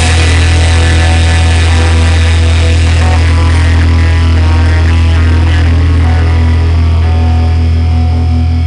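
A live rock band's final chord held and ringing out on electric bass and guitar through amplifiers, loud and steady over a deep sustained bass note, with no drums. The higher tones thin out near the end.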